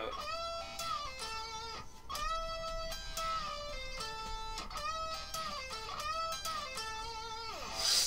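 Electric guitar playing a high lead lick in repeated phrases, with notes bent up and released back down. Near the end a note slides steeply down the neck.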